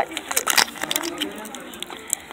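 Foil trading-card booster pack being picked up and handled, its wrapper crinkling in short sharp crackles, thickest in the first second, over faint background chatter.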